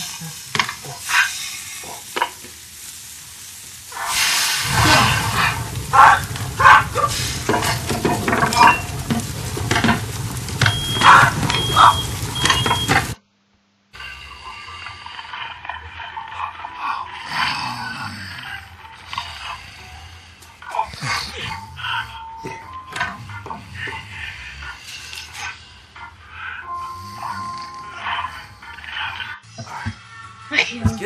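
Sizzling like food on a hot grill, with the clatter of metal tongs, loud for about nine seconds from four seconds in. It stops abruptly, then gives way to music with scattered clicks and a voice.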